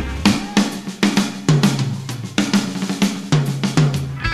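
Rock drum kit playing a short break: a busy run of snare and bass-drum hits with cymbals and hi-hat, the guitar chords dropping out until the band comes back in just after it.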